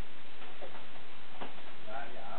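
Bubble-wrap packaging being handled and pulled at, giving two sharp clicks about a second apart over a steady hiss.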